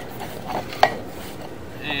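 Two sharp, hard knocks, one small and one loud just before the one-second mark, as a sewer inspection camera on its push rod is fed through the drain and knocks against the pipe at the change from PVC to clay.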